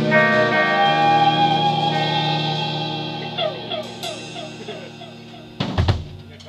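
A rock band's final chord ringing out on electric guitars through amps, with cymbal wash, slowly fading away. A sudden loud thump comes just before the end.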